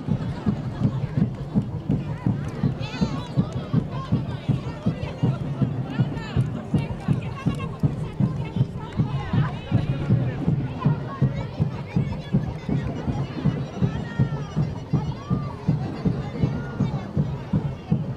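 Carnival parade music with a fast, steady beat, with the chatter of the crowd lining the street over it.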